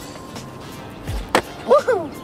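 A skateboard clacks once on the hard court surface about one and a half seconds in, a single sharp impact. A short falling vocal exclamation follows near the end, over background music.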